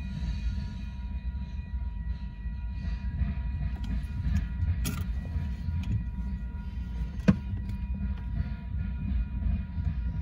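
Freight train cars rolling past through a grade crossing, heard from inside a car: a steady low rumble of wheels on rail with a few sharp clanks, the loudest about seven seconds in. A steady high tone runs under it.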